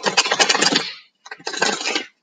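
A deck of thick tarot cards being shuffled: two quick bursts of rapid flicking card edges, the second after a short pause.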